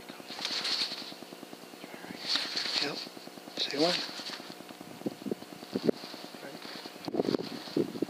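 Hushed, breathy speech in three short bursts, one of them a quiet 'okay', over a steady low hum. No shot is fired.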